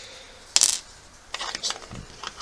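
Metal coins clinking as they are set down and moved about on a table: one sharp clink about half a second in, then a run of lighter clicks near the end.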